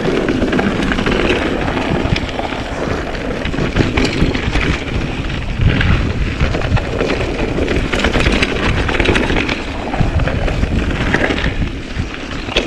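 Mountain bike riding down a dirt trail heard from an action camera: wind rushing over the microphone with a steady rumble of tyres on dirt, and frequent clicks and knocks of the bike rattling over bumps.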